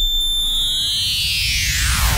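Hardcore electronic music in a breakdown with the beat dropped out: a single high synth tone that, from about a second in, splits into a widening fan of many rising and falling pitches over a low bass hum.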